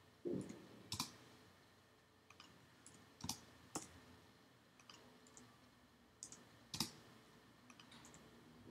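A few faint, scattered clicks of a computer keyboard and mouse as text is edited in a document.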